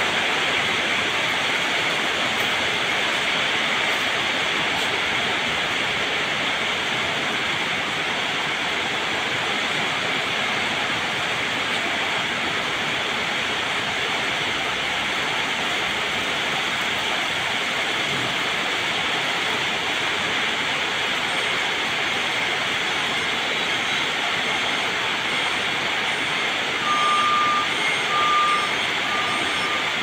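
A steady hiss runs throughout. About three seconds before the end, an electric forklift's reversing alarm starts beeping, a high repeating beep.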